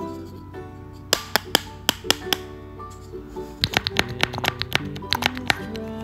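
Background music with sharp taps of a cut-out paper dye brush dabbing in a paper bowl: about half a dozen taps a second or so in, then a quicker run of a dozen or more from about three and a half seconds.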